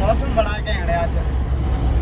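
Steady low rumble of a car's road and engine noise heard inside the cabin while driving, with a man's voice over it for about the first second.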